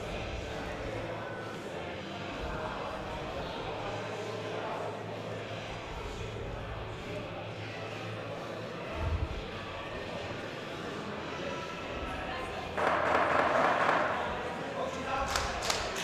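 Indistinct murmur of voices in a large hall, with a single low thud about nine seconds in. Near the end there is a sudden burst of noise lasting about a second, followed by a few sharp knocks.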